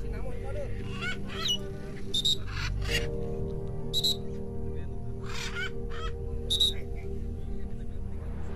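Short, sharp parrot squawks come every second or so and are the loudest sounds, over music with steady held chords.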